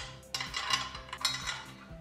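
Steel bolts clinking against a steel handlebar bracket as they are fitted into its holes: a handful of light metallic clicks spread over the two seconds.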